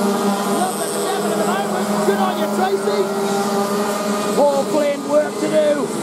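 A pack of TAG two-stroke racing karts running together through a bend. The engines hold steady high notes while individual karts' revs rise and fall as they brake and accelerate.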